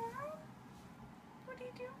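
Domestic cat meowing: a short rising meow right at the start, then a second, choppier meow near the end.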